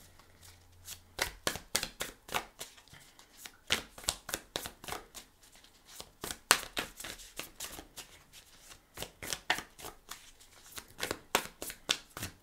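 A deck of tarot cards being shuffled by hand: irregular soft clicks of cards slipping against each other, several a second, with brief pauses between runs.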